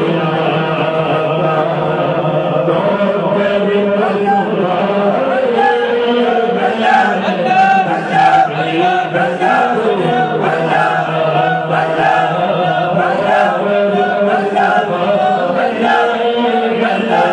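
Male voices chanting together in a devotional chant, sustained over a steady held low note.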